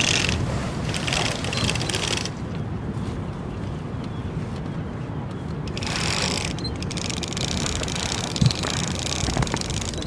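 Heavy canvas gaff mainsail rustling as it is hauled up by hand on its halyard through pulley blocks, over wind on the microphone, with one knock about eight and a half seconds in.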